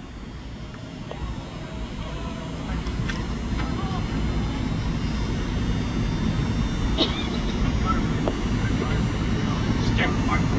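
A low rumble that builds steadily over several seconds and then holds, with faint crowd chatter and a single sharp click about seven seconds in.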